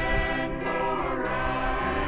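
Music with a choir of voices holding sustained chords, the notes gliding slowly from one to the next.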